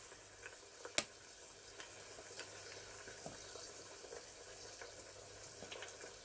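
Tempura-battered pineapple ring frying in hot oil in a small pot: a faint, steady sizzle. A sharp click about a second in.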